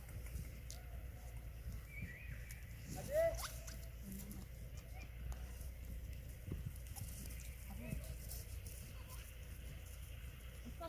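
Goats eating apple pieces from a hand, with faint scattered crunching clicks, and a short call that rises and falls about three seconds in.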